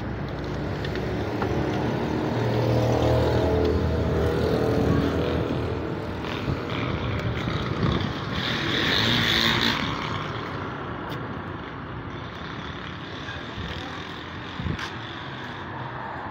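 Street traffic: road vehicles passing, an engine hum swelling over the first few seconds, a brighter, noisier passage about halfway through, then a steadier, quieter traffic background.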